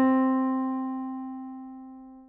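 A single piano note, the first degree (tonic) of the scale, struck just before and ringing out, fading steadily until it has almost died away by the end.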